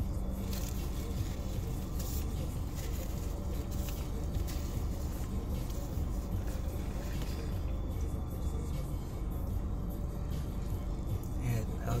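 Steady low hum in a car cabin, with small scattered clicks and mouth noises from chewing a hot dog.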